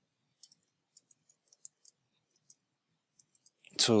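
Computer keyboard being typed on: about ten faint, irregular key clicks as a short word is typed.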